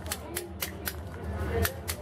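Mallet striking a steel chisel into stone in hand carving: sharp, ringing clicks about three or four a second, slightly uneven.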